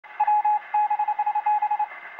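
Morse-code-style beeping: a single steady tone keyed on and off in long dashes and runs of short dots, used as a radio-show intro sound effect.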